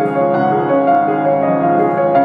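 Piano being played: a melody of single notes over held, ringing chords, a new note every third of a second or so. It is a tried-out idea for a piano solo, still being worked out.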